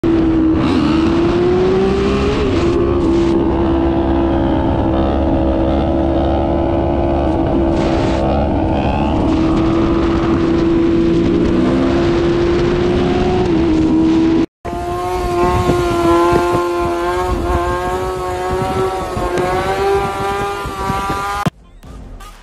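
Sport bike engines running at high revs while riding: a loud, steady engine note that rises briefly twice. After a short dropout comes a second engine note that wavers up and down.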